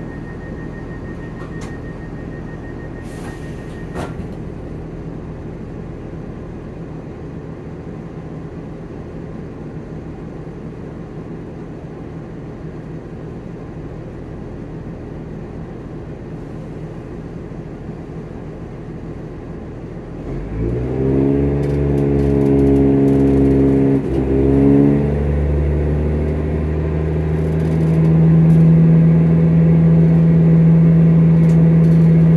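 Inside a Class 170 Turbostar diesel multiple unit: the underfloor diesel engine idles as a steady low rumble, while a high pulsing warning tone sounds for the first few seconds and ends with a clunk, typical of the doors closing. About two-thirds of the way through, the engine throttles up and rises in pitch as the train pulls away, dips briefly a few seconds later, then climbs louder again near the end.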